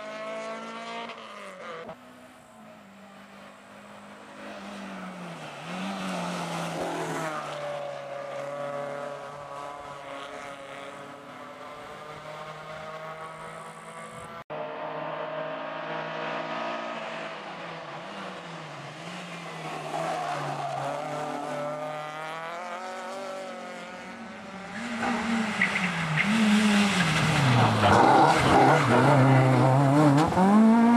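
Rally-prepared Renault Clio hatchbacks racing uphill one at a time. Their four-cylinder engines rev hard, the pitch climbing and dropping with gear changes and with lifting for bends, and there is some tyre squeal. The engine noise fades and returns as cars go away and come close, and it is loudest near the end as a car passes nearby.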